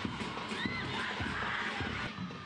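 High-pitched shouts and screams of celebration as the goal goes in, rising and falling, over the general noise of the stadium.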